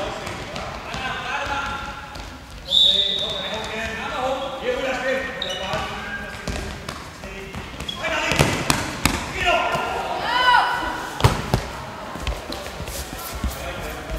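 Handball game in an echoing sports hall: voices calling across the court, the ball bouncing on the floor and sharp knocks, clustered from about eight seconds in, with a brief high tone about three seconds in.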